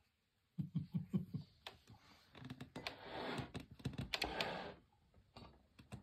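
Close handling noise: a quick run of soft taps and clicks about half a second in, then about two seconds of scratchy rustling that stops abruptly, with a few faint clicks near the end.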